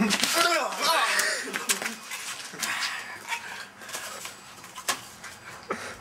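A man groaning in pain from pepper spray in his eyes, a drawn-out voiced moan in the first second or so, then breathing hard and wheezing. A few sharp clicks come through, one near the end.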